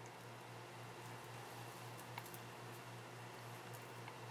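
Quiet room tone with a steady low hum and a few faint, light ticks as a beading needle and thread are worked through small glass seed beads.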